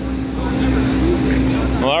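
Steady running drone of a truck-mounted carpet-cleaning machine's engine, with a constant hum and an even low pulse. Voices of people talking come over the top.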